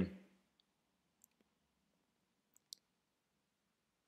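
Near silence broken by a few faint, scattered clicks: a stylus tapping on a pen tablet as handwriting is written.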